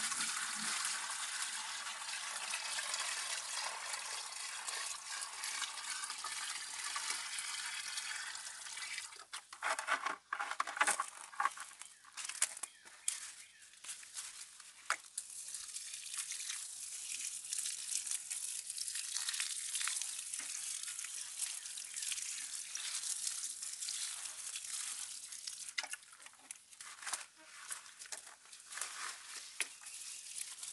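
Liquid poured from a plastic bucket into a plastic watering can, a steady splashing pour, then irregular knocks and rustles as the can is handled. From about a quarter of the way through, the watering can pours a stream onto the soil at the base of the plants, with small knocks among the leaves.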